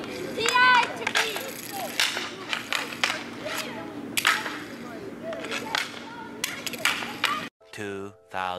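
Roller hockey sticks cracking and tapping as players pass and catch, sharp knocks at irregular intervals, with a short shout about half a second in. The sound cuts off suddenly near the end.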